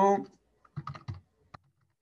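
Computer keyboard typing: a quick run of keystrokes about a second in, then one sharp click.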